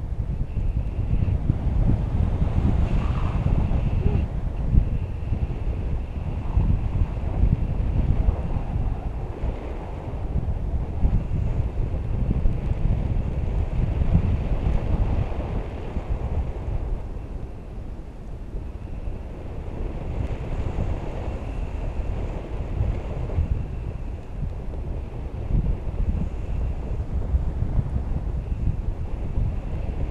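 Wind buffeting the camera microphone of a paraglider in flight: a loud, gusting low rumble of rushing air that eases slightly midway.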